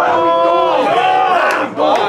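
A crowd of men shouting and hollering in reaction to a battle-rap punchline. It opens with one long drawn-out shout, then several voices yell over each other.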